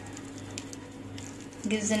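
A steady low background hum with a few faint clicks; a woman starts speaking near the end.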